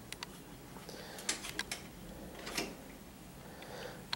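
Quiet room tone with a few faint, scattered clicks and taps.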